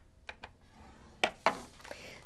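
A few light clicks and taps with a soft rustle as a sheet of patterned paper is turned around and repositioned on a plastic scoring board, a bone folder in hand.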